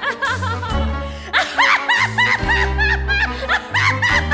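Broadway show-tune orchestral accompaniment: a run of quick, short high notes, several a second, over sustained low chords that change about once a second.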